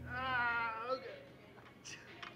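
A man's high-pitched, wavering whine of strain, just under a second long, as he forces out a rep of an overhead barbell press near muscular failure.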